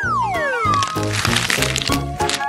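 Background music with a steady beat and a falling whistle sound effect, then a crack and crunching as a hard candy ring is bitten and breaks.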